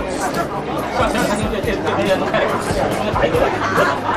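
Overlapping chatter of many diners in a busy restaurant dining room, with noodles being slurped close to the microphone.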